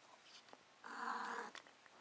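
A female cat in heat giving one short, low call of about half a second near the middle.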